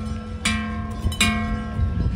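Large cowbells on cattle clanging as the animals move, two struck notes about three quarters of a second apart, each ringing on.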